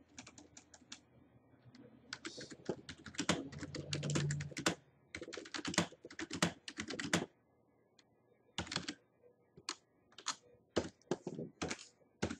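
Typing on a computer keyboard: quick runs of keystroke clicks broken by short pauses, with a longer break of about a second past the middle.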